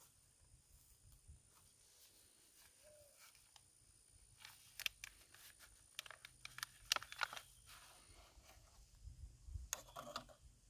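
Mostly quiet, then a run of sharp clicks and crackles from about four and a half seconds in until past seven seconds, with more near the end: a small black plastic nursery pot being handled and squeezed as a vine's root ball is worked out of it.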